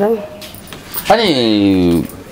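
A person's voice: a short word at the start, then one long drawn-out vowel about a second long that falls in pitch and levels off low, in the second half.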